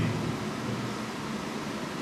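Steady background hiss of room noise picked up by the microphone, with the tail of a man's voice fading out at the very start.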